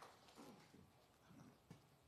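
Near silence: room tone, with faint distant voices.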